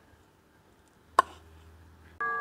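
Mostly quiet, with one sharp knock a little over a second in: a wooden spatula striking a stainless steel pot while loosening cooked glutinous rice.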